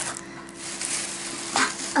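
Plastic packaging and a plastic shopping bag rustling and crinkling as items are handled. There is a sharp click at the start and a louder crinkle about a second and a half in.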